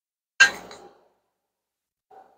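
A single clink of a serving spoon striking dishware while pasta is scooped out, with a short ringing tail.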